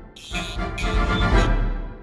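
Background music with a deep bass and held chords, swelling after a brief dip at the start and fading near the end.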